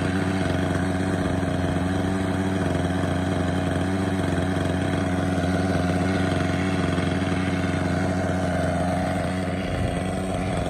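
Raptor 30 RC helicopter's small two-stroke glow (nitro) engine idling steadily while being run in on the ground, main rotor not yet turning. Its note shifts near the end.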